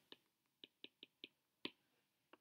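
Six faint, sharp taps of a pen stylus on a tablet screen as words are handwritten, the loudest a little past halfway through.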